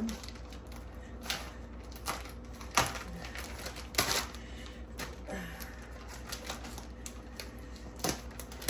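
Light clicks and taps from kitchen handling: a few scattered strikes over several seconds, over a faint steady hum.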